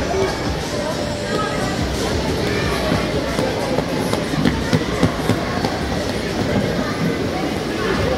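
Busy ice rink: a babble of voices over the continuous scraping and rumble of skate blades and skating aids on the ice, with a few sharper knocks about halfway through.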